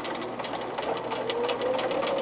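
Bernina electric sewing machine stitching a strip of Velcro onto fabric, back tacking at the start of the seam. The motor hums over the rapid ticking of the needle, its pitch climbing slightly from about a second in as the machine speeds up.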